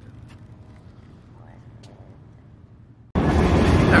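Quiet room tone: a low steady hum with a few faint clicks. About three seconds in it cuts abruptly to loud, rushing background noise as a man's voice begins.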